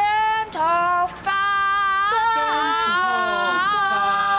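Several women singing a drawn-out, wailing chant with long held notes, their voices overlapping on different pitches in the second half.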